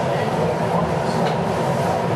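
Steady low rumble and hum of background noise in the room, even and unbroken, in a pause between speakers.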